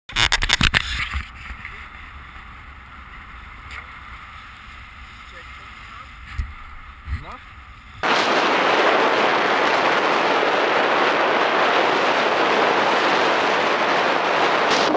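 A few loud knocks in the first second, then a quieter stretch with a short "yeah" and a laugh about seven seconds in. From about eight seconds on, a loud, steady rushing noise of wind on the microphone and skate blades running over the ice while ice-kiting at speed.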